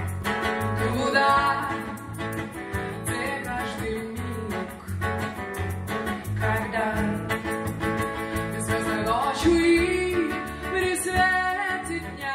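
Live band music: a steel-string acoustic guitar and an electric bass guitar playing a steady beat, with female voices singing over them.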